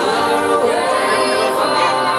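Background music with singing voices, choir-like, at a steady level.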